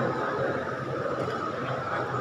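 Steady background noise in a large room, with no clear voice or distinct event, during a pause in a man's speech at a microphone.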